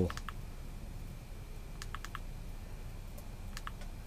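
Small push button on a rechargeable hand warmer clicking in quick groups of two and three as it is pressed to step the heat setting up toward 60 °C.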